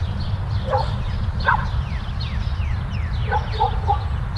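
Street ambience: a dog barking a few times in the distance, with a quick run of barks near the end, while birds chirp with short falling notes over a steady low rumble.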